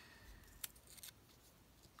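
Near silence, with a couple of faint clicks from a paper sticker being handled and pressed onto a planner page.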